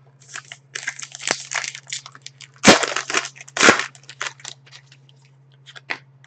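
Trading cards and their plastic sleeves handled on a table: a couple of seconds of rustling and sliding, then two sharper slaps about a second apart, then a few faint clicks. A low steady hum runs underneath.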